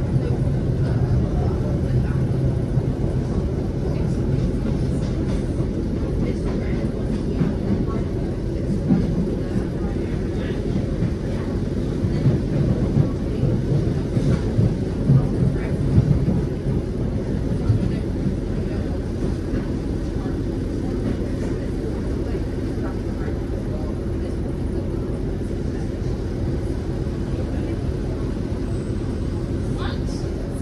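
Inside a passenger train carriage: the steady rumble of the train running on the rails, with a louder patch of uneven clattering and knocks in the middle as it crosses a spread of pointwork. The sound then settles to a smoother, even rumble as the train draws into a station platform.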